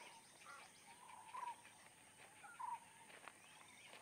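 Faint bird calls over quiet outdoor ambience: scattered soft chirps, with two short, slightly louder calls, one about a second and a half in and another just over a second later.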